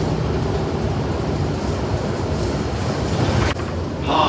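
Inside a city transit bus as it runs: a steady low rumble of engine and road noise, with one short click about three and a half seconds in.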